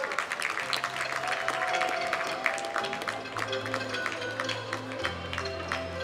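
Audience applause, many scattered claps, over stage music whose bass line steps down in pitch twice.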